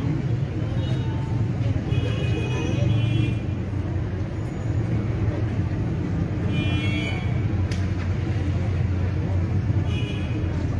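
A steady low rumble like street traffic, with indistinct background voices and two brief high-pitched tones, around two and seven seconds in.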